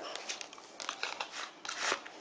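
A paperboard Bicycle playing-card tuck box being opened by hand: soft scraping and rustling of the flap and the cards sliding against the card stock, with a louder scrape near the end.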